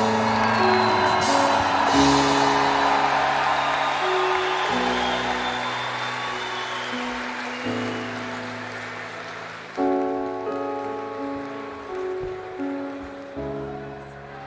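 A crowd applauds and cheers as a live song ends, over sustained band or orchestra chords that change every couple of seconds. The applause dies away, and from about ten seconds in soft keyboard notes play a slow phrase.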